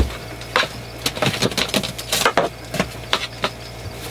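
A run of irregular light clicks and knocks as things are handled and shifted around inside a camper van during a hunt for a large flying bug, over a low steady hum.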